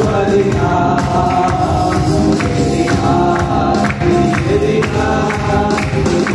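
Two men's voices singing a Tamil Christian worship song together, amplified through a microphone, with a steady beat keeping time behind them.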